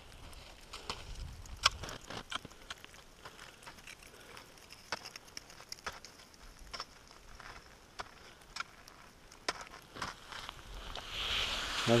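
Boots crunching into firm, frozen snow, irregular steps climbing a steep slope. A hiss builds near the end.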